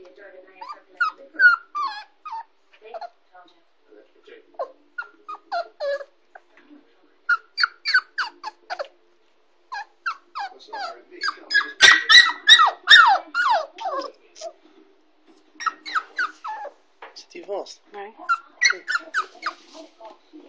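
Six-and-a-half-week-old Kooikerhondje puppy whining in short, high cries that mostly fall in pitch, repeated over and over and loudest about halfway through.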